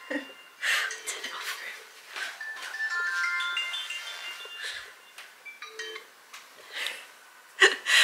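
Phone alarm going off again after repeated snoozing, playing a chiming melody of short stepped notes that comes in about two seconds in; laughter and breaths between, with a louder laugh near the end.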